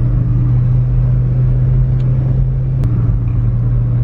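A car's steady low engine and road drone, heard from inside the cabin while driving at a constant speed, with two faint clicks about two and three seconds in.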